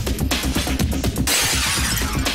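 Film soundtrack: a tense, rhythmic music score, with a sudden crash of noise about a second and a quarter in that lasts about half a second.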